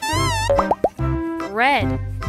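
Children's background music with cartoon sound effects: a wobbling tone, then three quick rising bloops about half a second in, and a warbling swoop up and down near the end.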